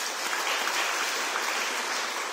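A crowd applauding steadily, with a dense patter of many hands clapping.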